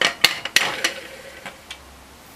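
Pressure cooker's regulator weight being set onto the vent pipe of the lid: a quick run of sharp metal clicks and clinks in the first second, then a couple of lighter ticks.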